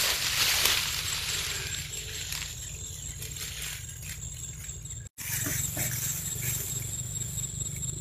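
Dry tall grass rustling and swishing as it is parted and brushed against, loudest in the first second, with a steady high-pitched tone underneath. The sound cuts out for an instant about five seconds in.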